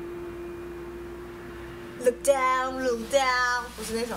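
A young woman's voice singing two short held phrases in the second half, over a steady hum that stops near the end.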